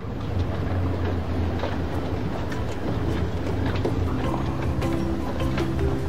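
Open safari truck driving on a dirt track: steady engine running with frequent knocks and rattles from the body. Music comes in over it in the second half.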